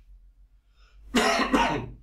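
A man coughs twice in quick succession, starting about a second in.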